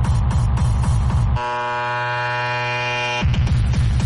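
Hard tekno music: a steady pounding kick drum that drops out about a second and a half in, leaving a long held synth sound. The kick comes back in near the end.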